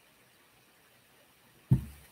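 Quiet room tone in a small office, broken near the end by one short, low sound that fades quickly.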